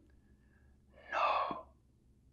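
A man's quick breath in through the mouth, about half a second long, about a second in.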